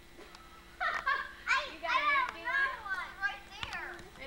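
Young children's high-pitched voices calling out and shouting, starting about a second in, with no clear words.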